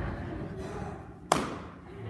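A balloon popping once with a single sharp bang about a second in, burst by a needle. Before it there is a short laugh.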